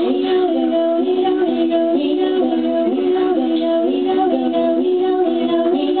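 A woman's voice singing in layered harmony: several held notes sound at once and step between pitches in a repeating pattern.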